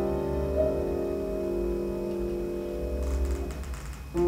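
Violin and grand piano playing a slow passage of contemporary chamber music: a held chord rings steadily, then dies away about three and a half seconds in.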